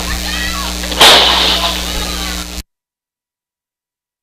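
Electrical hum on a faulty commentary audio feed, under faint voices, broken by a loud crash about a second in; then the sound cuts out completely about two and a half seconds in.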